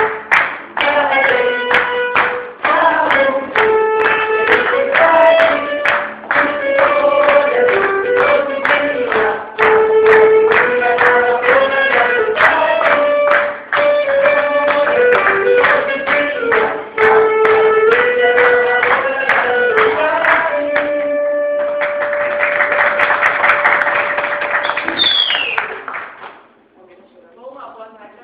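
Live music played in a room: a melody in held notes stepping up and down over steady chords and a regular beat. About 21 seconds in it settles on one long held note while a wash of applause rises over it, and it stops just before the end.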